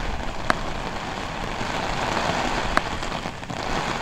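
Heavy rain pouring down steadily, with two sharp taps of nearby drops, one about half a second in and one near three seconds.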